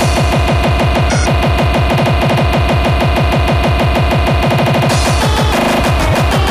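Speedcore track: very fast, heavy electronic kick drums, several a second, come in at the start under steady synth tones, with a brief break in the kick pattern a little before the end.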